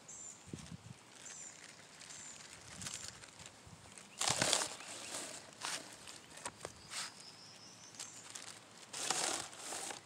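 Small plastic bag of diatomaceous earth rustling as powder is shaken out of it, in two short bursts: about four seconds in and again near the end.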